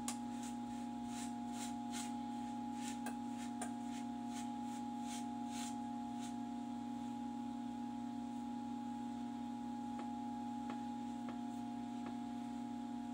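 Hands digging through loose sandy substrate in a plastic tub, giving a run of gritty scrapes about twice a second that thins out to a few faint scrapes after about six seconds. It is the sound of hand-digging to uncover freshly laid uromastyx eggs. A steady hum runs underneath throughout.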